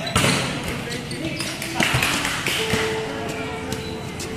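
A volleyball smacked hard at the net in a spike and block, loudest just after the start, followed by a few more sharp ball thuds on the concrete court amid shouting voices of players and spectators.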